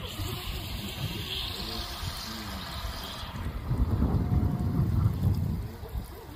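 Water bubbling and trickling in an aerated goldfish pond, its hiss fading about three seconds in, with wind rumbling on the microphone that is strongest in the second half. Faint voices in the background.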